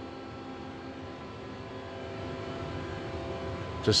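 Steady electrical and mechanical hum of a powered-on Miyano CNC lathe, with several steady tones, growing slightly louder as the sound nears the machine.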